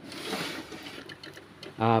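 HP LaserJet P1006 laser printer starting up just after being switched on, its mechanism whirring briefly with faint ticks for about a second, then fading.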